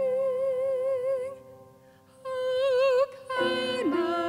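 A woman singing long held notes with vibrato over soft, steady accompaniment tones. She breaks off briefly in the middle, comes back on a note, then steps down to a lower one near the end.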